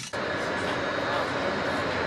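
Steady background noise of a large aircraft hangar: an even, continuous hiss with a faint high whine in it, cutting in abruptly at the very start.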